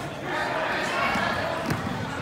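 Indistinct voices of onlookers talking and calling out during a wrestling bout, with a single dull thump near the end.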